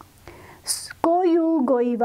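Only speech: a woman's lecturing voice, after a short pause in the first second.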